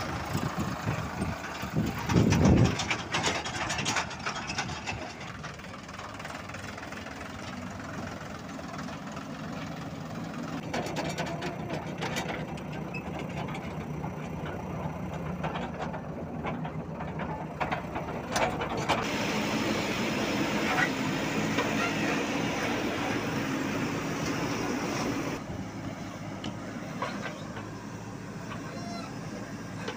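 Diesel engines of a tractor and other heavy machinery running steadily, with a brief loud burst about two seconds in and the level shifting a few times.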